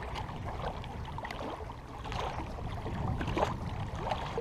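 Small waves lapping and gurgling against the shoreline rocks, over a steady low rumble of wind on the microphone.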